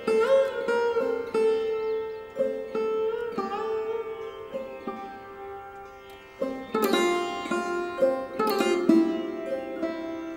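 Instrumental music on a plucked string instrument: single notes struck and bent in pitch after each pluck, growing quieter toward the middle, then picking up again with stronger strikes about six and a half seconds in.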